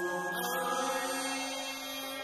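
A slow Vietnamese love song: a long held sung note over sustained accompaniment, with the notes changing about half a second in.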